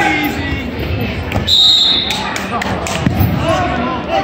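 Wrestling bout on a gym mat, with shouted voices throughout. About a second and a half in comes a short high tone, then a quick run of sharp slaps and a heavy thud on the mat.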